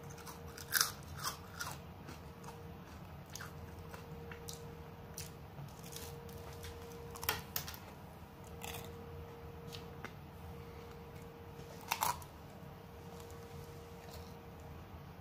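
A person biting and chewing an ice cream waffle cone, the wafer crunching in sharp bursts: several crunches about a second in, one near the middle and a loud one near the end.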